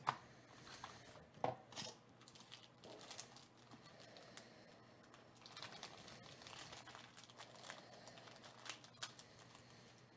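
Faint crinkling and crackling of a black glossy plastic wrapper being handled and opened by hand, with scattered small clicks; sharp crackles come at the very start and about one and a half seconds in.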